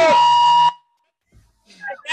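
Several people whooping and cheering at once over a video-call line, with a steady high tone running under the voices. The sound cuts off abruptly under a second in, about a second of dead silence follows, and voices start again near the end.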